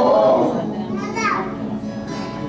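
Male gospel group singing with acoustic guitar accompaniment; the voice slides down in pitch about a second in.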